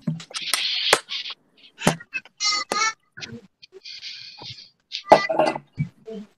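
A jumble of sharp clicks, hiss lasting about a second at a time, and a brief fragment of pitched, voice-like sound, picked up by open microphones on a group video call.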